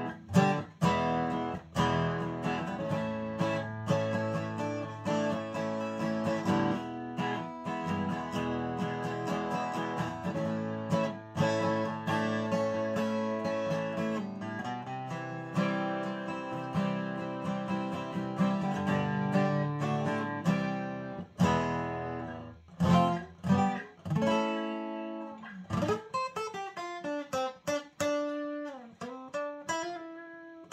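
Martin DC-35E cutaway dreadnought acoustic guitar played unplugged: full ringing chords strummed and picked for about twenty seconds, then a few sharp accented strums, and single-note lines with notes sliding and bending in pitch near the end.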